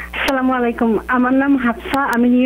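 Speech only: a caller talking over a telephone line, the voice thin and cut off above the phone band, with a click as the line comes in.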